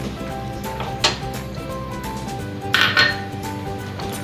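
Metal spoon scraping and clinking against a stainless steel pot as milk and rice are stirred, with two sharper strikes, about a second in and near three seconds, the second the loudest.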